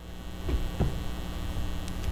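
Steady low electrical mains hum in the audio, with a couple of faint soft knocks about half a second in.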